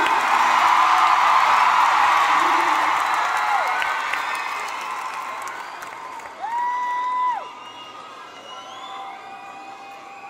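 Arena crowd cheering and screaming as the last held note of the song dies away; the cheer is loudest at first and fades steadily. About six and a half seconds in, one fan lets out a single long, high cry lasting under a second, over a quieter crowd.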